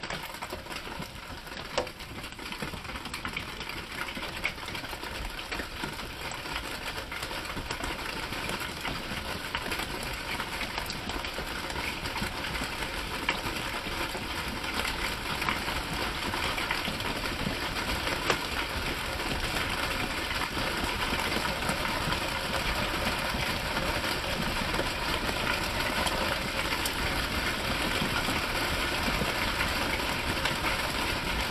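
Hail and rain drumming densely, a rapid patter of many small hits that grows steadily louder.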